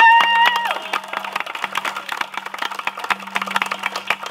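A long shout of "woo!" followed by a small crowd applauding, scattered handclaps continuing to the end.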